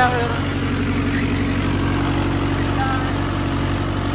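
Mahindra Yuvo 585 DI tractor's four-cylinder diesel engine running steadily under load, driving an 8 ft rotavator set fully down into the soil.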